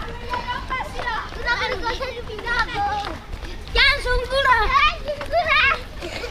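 Children's high voices shouting and calling out in short bursts, loudest near the end, over a low rumble.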